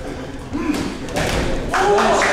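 Several dull thuds of boxing gloves landing as punches are exchanged in the ring, with short indistinct shouts of voices among them.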